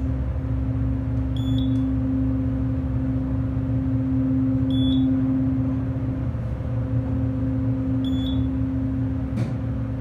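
US hydraulic elevator's pump motor running with a steady hum as the car rises, heard from inside the cab. Three short electronic beeps come a few seconds apart as it passes floors, and there is a brief click near the end.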